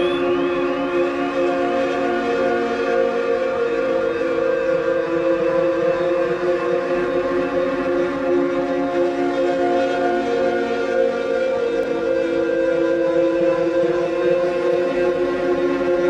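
Live experimental electronic music: a dense, steady drone of layered held tones. A few short rising chirps sound at the very start.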